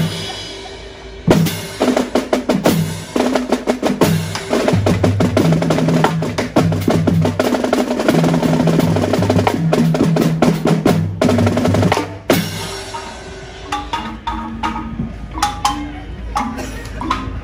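Marching band playing live: snare and tenor drums in fast rolls with bass drums and cymbals over held brass notes. A loud accented hit about a second in launches the full section, which cuts off sharply about twelve seconds in, leaving lighter scattered strikes.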